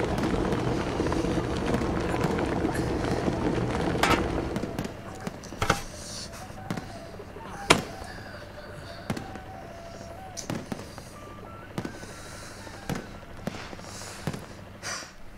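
Firecrackers going off in scattered single cracks every second or two, the sharpest about eight seconds in. A busy din with voices fills the first five seconds, then drops away.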